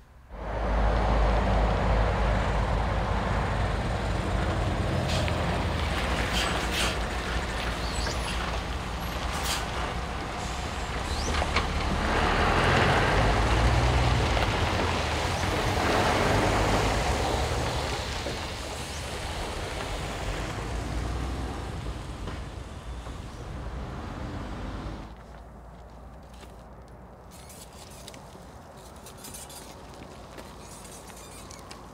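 Road vehicles passing close by, a sustained low engine and tyre rumble that swells and fades as they go by. About 25 seconds in it drops sharply to a much quieter background.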